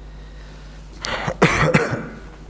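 A man coughs a few times into his hand, starting about a second in.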